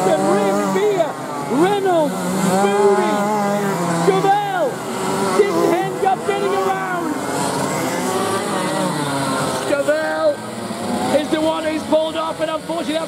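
Several 125cc two-stroke racing kart engines revving as the karts race past, with overlapping whines that rise and fall in pitch every half second or so through the corners.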